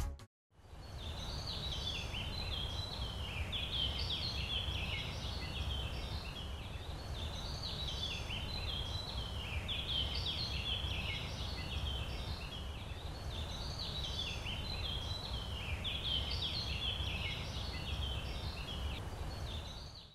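Birds chirping and twittering continuously over a steady low rumble, starting about half a second in after a brief silence: a countryside ambience.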